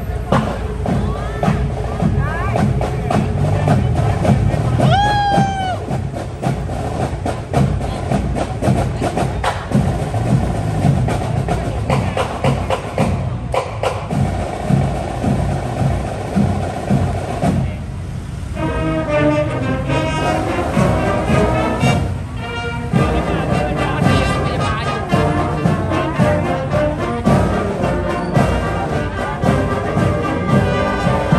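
Loud parade music with a steady drumbeat, mixed with the voices of a street crowd; brass-like tones come in clearly in the second half.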